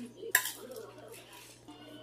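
A steel spoon stirring puffed rice in a stainless steel pan: one sharp metal clink about a third of a second in, then the rustle of the rice and a light scrape of spoon on pan.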